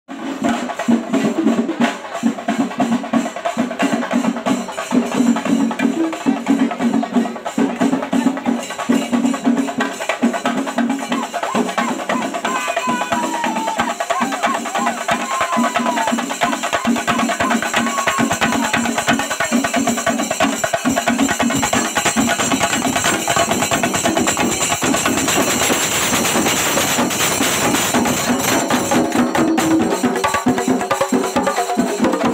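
A troupe of Kerala chenda drums beaten with sticks in a fast, dense rhythm, the strokes becoming more continuous and steady in the second half.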